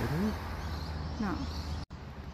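A woman's voice in short fragments over a steady low background rumble on a phone microphone outdoors. The sound cuts out abruptly just before the end.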